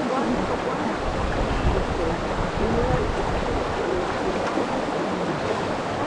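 Steady rush of stream water running among rocks, with wind buffeting the microphone. A faint voice comes through briefly in the middle.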